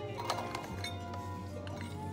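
Background music, with light clinks of a small metal scoop against a plastic tub and cup as crunchy caramel pieces are scooped onto a drink; the sharpest clink comes about a third of a second in.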